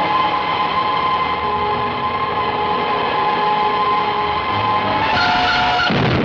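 Film sound effect of a flying saucer: a steady electronic whine of several held tones over a rushing noise. About five seconds in it shifts pitch and turns brighter and hissier as the saucer fires its ray.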